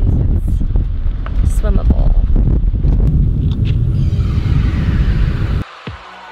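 Cabin noise of an SUV on the move: a loud, steady low rumble of road and engine noise with some wind. It cuts off abruptly near the end, where music takes over.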